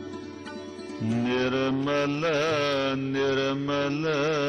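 Gurbani kirtan: a singer holds long, wavering, ornamented notes over a steady harmonium drone. The music grows louder about a second in.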